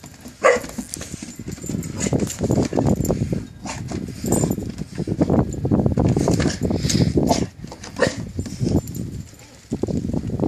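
A Rottweiler puppy and a kitten tussling on a wooden deck: irregular scuffling and animal noises through most of it, with a short high cry about half a second in.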